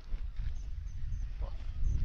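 Low, fluctuating rumble on the microphone, with a brief faint voice about one and a half seconds in.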